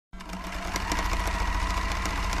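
Sewing machine stitching at speed: a rapid, even clatter of needle strokes over a steady motor hum.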